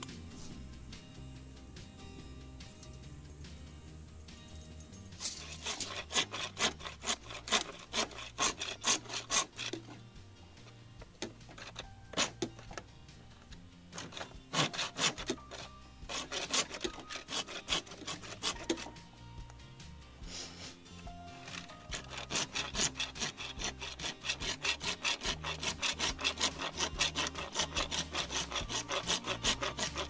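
Hand saw cutting through plastic PVC pipe in quick back-and-forth strokes. It comes in three bouts of sawing, the last and longest running through the second half.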